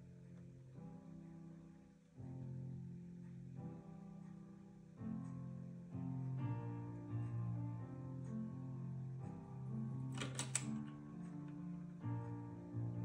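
Slow piano music with long held notes. A little after ten seconds in, a brief metallic jingle of keys swinging in a cabinet lock.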